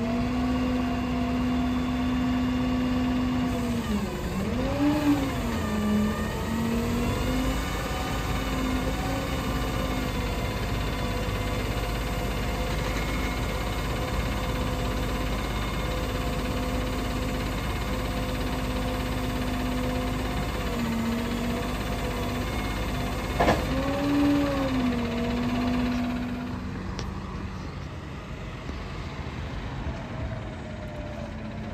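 Autocar roll-off garbage truck's engine running at a steady raised speed while the hydraulic tarp arm works, its pitch sagging and recovering about four to six seconds in and again near the end. A single sharp clack about 23 seconds in, then the engine sound fades over the last few seconds.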